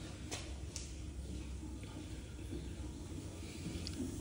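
Quiet background: a steady low hum with two faint sharp clicks, about a third and three quarters of a second in.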